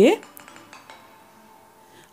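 A few faint, quick clinks of kitchen utensils about half a second in, then a low, faint kitchen background.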